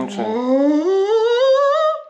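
A person's voice drawing out a single word as one long sing-song note. The note climbs slowly in pitch with a slight wobble and stops near the end.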